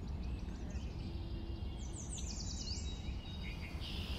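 Birds chirping and singing over a steady low rumble of outdoor ambience, with a quick run of about eight high falling notes about two seconds in.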